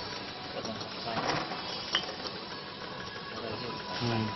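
Glass bottles clinking against each other on a running bottle neck-labeling machine, over a steady machine and workshop noise, with a sharp click about two seconds in.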